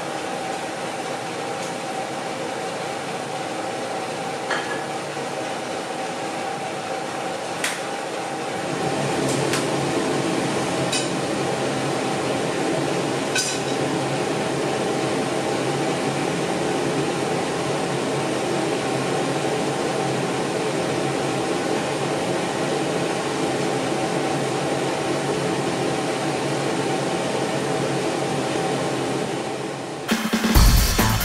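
Steady hum of a kitchen range hood fan, louder and fuller from about 8 seconds in, with a few light clinks of glass and dishes in the first half.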